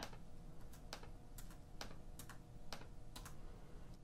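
Computer keys clicking: about eight separate, quiet, sharp clicks spaced irregularly, over a faint steady hum.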